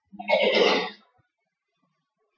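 A person clearing their throat once, a short rough burst lasting under a second near the start.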